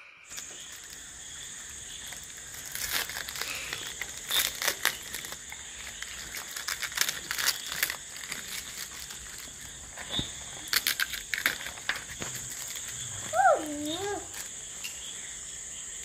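Brown paper and cardboard packaging crinkling and rustling in irregular crackles as hands wrap a small potted plant for shipping. Near the end a brief voice glides up and down.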